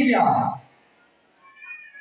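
A man's voice over a microphone ends a phrase with a drawn-out vowel that glides in pitch and fades out about half a second in, followed by a brief pause before the next sentence.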